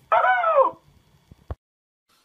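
A short, loud cry that rises and then falls in pitch, about half a second long, followed by a single sharp click about a second and a half in.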